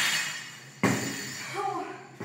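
Dropped loaded barbell rattling and settling on a rubber gym floor, its metallic ring dying away, with a second sharp knock a little under a second in. A short voice sound comes near the end.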